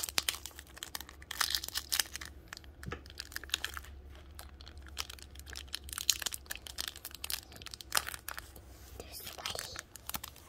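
Foil wrapper of a Pokémon booster pack crinkled and crackled in the hands as it is worked at to tear it open, a run of irregular crackles, denser in a few clusters, over a low steady hum.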